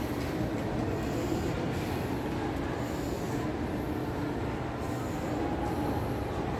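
Steady low rumbling background noise of a shopping mall interior, with no distinct events.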